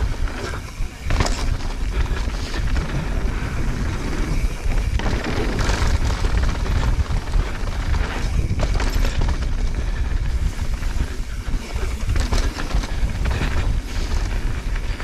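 Wind buffeting an action camera's microphone during a fast mountain-bike descent on a dirt trail, with steady low rumble from the tyres and frame and irregular clatters as the bike hits bumps, including a run of knocks over a wooden boardwalk about halfway through.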